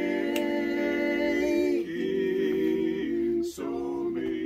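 Barbershop quartet singing a cappella in close four-part harmony, holding long sustained chords, with a brief break for breath about three and a half seconds in.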